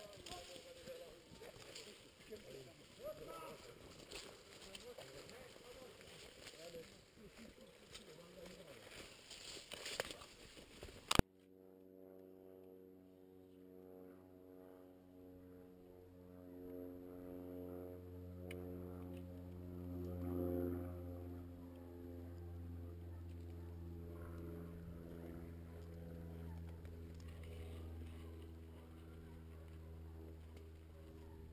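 Footsteps and rustling branches as people push through dry scrub on foot. About eleven seconds in, this cuts abruptly to a steady, low, sustained music drone with even overtones, which swells a little in the middle.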